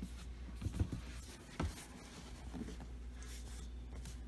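Cardboard box being handled and shifted: light rubbing and scraping with a few sharp knocks, the loudest about a second and a half in, over a steady low hum.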